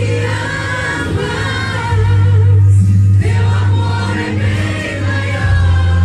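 Live Christian worship song sung in Portuguese: voices singing together, led on a microphone, over accompaniment with long sustained bass notes.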